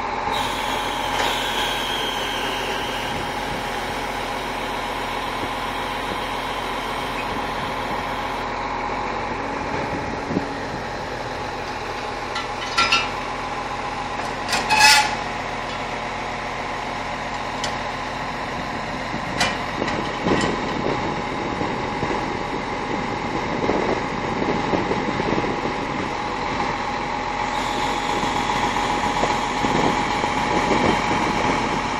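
A mobile crane truck's diesel engine running steadily, a constant hum with a steady whine in it, rising a little near the end. A few short sharp clicks or knocks break through, the loudest about halfway.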